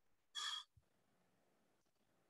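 A single short breath, about a third of a second long, near the start; otherwise near silence.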